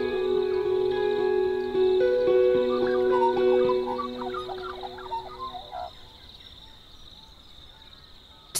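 Soft plucked-string background music with held notes, fading out about five to six seconds in. Under it runs a steady high trill of crickets.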